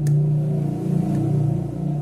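A motor vehicle engine running off-camera with a low rumble, loudest in the first second and a half and then easing off.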